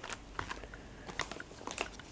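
Faint crinkling and scattered light clicks from a plastic-wrapped stack of aluminium foil tins being handled.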